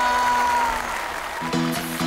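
Edited-in music: the held final note of a pop song tails off over applause, then a new electronic music track with steady repeating chords starts about a second and a half in.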